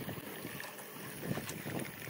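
Petrol running from a pump nozzle into a motorcycle's fuel tank as it is topped off slowly to the brim, a steady low hiss.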